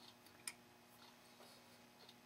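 Near silence over a faint steady hum, with a few faint ticks and one sharp light click about half a second in, from a model engine and metal fuel tank being shifted by hand on a balsa fuselage.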